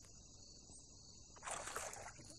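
Steady high chirring of insects, with a short splash about a second and a half in as a hooked largemouth bass is lifted out of the water.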